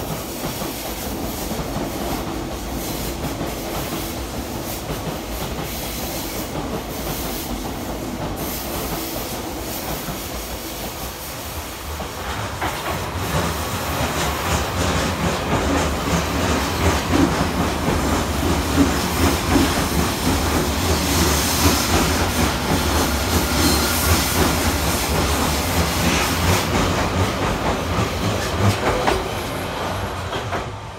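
Odakyu Romancecar express trains passing through the station without stopping, with running rumble and wheel clatter. The sound gets louder about twelve seconds in as the blue 60000-series MSE runs by on the near track, and it eases off near the end.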